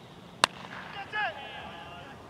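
A cricket bat strikes the ball with a single sharp crack about half a second in, followed shortly by a brief shout from a player.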